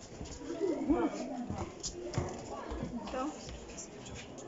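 Indistinct voices of several people talking and calling, the loudest burst about a second in.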